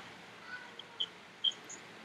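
A quiet pause with low room noise, broken by a few faint, very short high-pitched chirps about a second into it.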